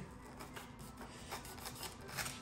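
Faint rasping of a Morakniv Finn knife blade pressed down through rope fibres on a wooden board, with a few soft ticks. The factory Scandi edge no longer bites cleanly into the rope and starts to tear it, which the user takes for the very edge having flattened out.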